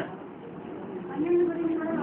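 Speech: a single speaker's voice, quieter for about the first second, then resuming with a drawn-out sound.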